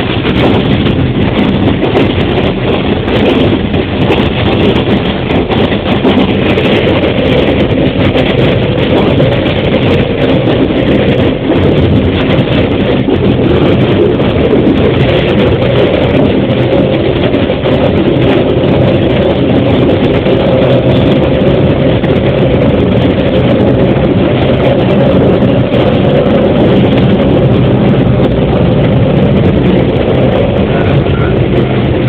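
KiHa 40 diesel railcar's engine running steadily, heard from inside the cab as the railcar travels along the track.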